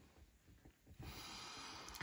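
A person's soft breath, an even exhale of about a second that starts halfway through, after a moment of near silence.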